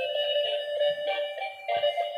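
Tinny electronic melody from a light-up transparent gear toy car's built-in speaker: a quick run of beeping notes, changing several times a second.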